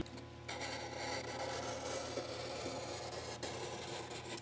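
Felt-tip marker pen rubbing steadily across paper, starting about half a second in, as a printed timetable entry is struck through.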